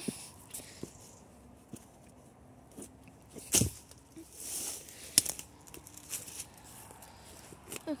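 Dry leaves and twigs crunching and snapping underfoot, with foliage brushing past, as someone pushes out through undergrowth. The sharpest snaps come about three and a half seconds and five seconds in.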